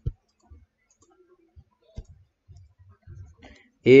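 Stylus clicking and tapping on a tablet during handwriting: a sharp click at the start, another about two seconds in, and faint soft taps between.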